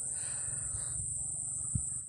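A steady, high-pitched chorus of crickets.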